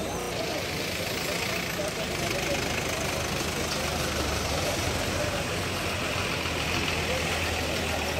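A large vehicle's engine idling steadily close by, under the voices of a crowd on the street.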